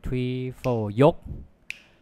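A single sharp finger snap near the end, keeping time under a man's drawn-out spoken count and rhythm syllable.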